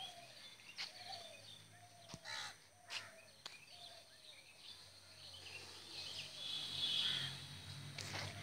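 Birds calling in a string of short repeated calls, over a low steady hum that swells about six to seven seconds in.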